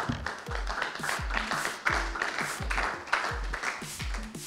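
Background music with a steady beat and deep falling bass notes, with audience applause over it.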